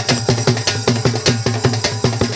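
Danda nacha folk music with rapid, dense drumming over a steady low drone.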